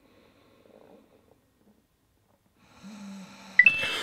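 A man snoring while nodding off: faint breathing at first, then a drawn-out snore near the end, broken by a sharp click just before he wakes.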